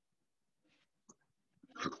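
Near silence with faint computer keyboard keystrokes, one small click about a second in, then a man's voice starting up near the end.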